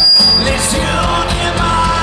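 Live rock band playing, with electric guitar, bass guitar and drums. A loud accented hit comes right at the start.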